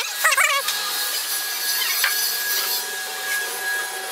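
Power tool working wood: a steady whine with a hiss of abrasion.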